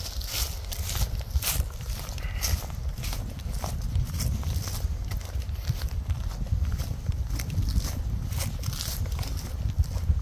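Footsteps walking through dry leaf litter and grass, a string of irregular crunching steps, with wind rumbling on the microphone underneath.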